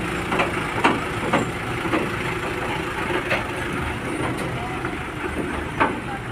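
Diesel engine of an ACE F180 hydra crane running at low revs as the crane reverses slowly, with several short, sharp knocks over the steady engine hum.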